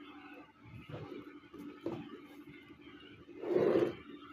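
Pencil and plastic set square working on drawing paper: faint scratches and small taps, then a louder scraping stroke of about half a second near the end as a line is drawn along the set square.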